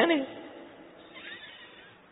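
A man's voice ending a spoken phrase on a drawn-out, rising vowel, then a pause in which only a faint soft sound is heard about a second in.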